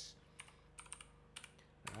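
Faint computer keyboard typing: a handful of separate soft keystrokes, as a short file name is typed in.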